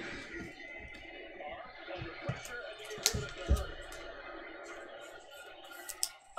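Quiet room sound with faint background music and a few light taps and clicks, about two and three seconds in.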